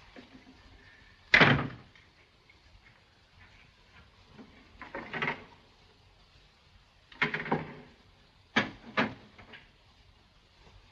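A door bangs shut about a second in, the loudest sound. A softer thud and a sharp knock follow, then two quick knocks close together near the end.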